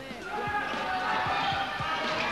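A football being played on an indoor five-a-side pitch: a quick series of dull thuds from the ball being kicked, bouncing and striking the boards, several a second. Voices can be heard in the hall.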